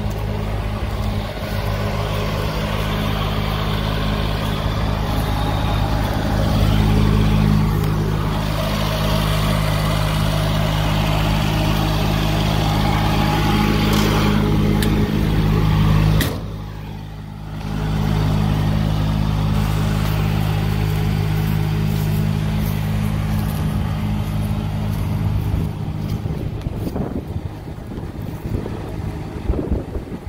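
Skyjack SJ6832RT dual-fuel scissor lift's engine running steadily at a constant speed, with a steady low hum. About sixteen seconds in it briefly drops in level for a second or so, then returns.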